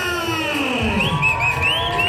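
Amplified sound from the arena's public-address system: a long pitch glide falling over the first second, then steady held tones with small wavering high notes. Crowd noise runs underneath.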